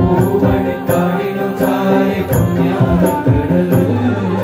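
Men's voices singing a devotional bhajan together over long held electronic keyboard chords, with hand percussion striking the beat about twice a second.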